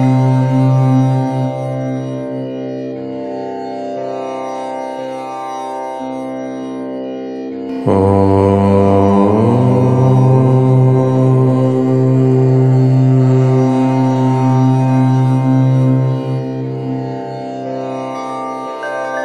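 Deep voice chanting a long, drawn-out "Om" as a steady low drone. One Om fades a second or so in, and a new, louder one begins suddenly about eight seconds in, held for several seconds before easing off near the end.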